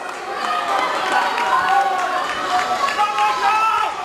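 Spectators shouting and cheering, several raised, high voices overlapping.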